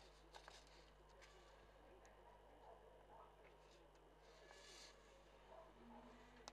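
Near silence: faint room tone with a few faint, scattered clicks.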